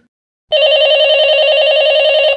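A telephone rings once as a sound effect: a loud, rapidly trilling bell-like ring that starts about half a second in and lasts almost two seconds, cutting off suddenly.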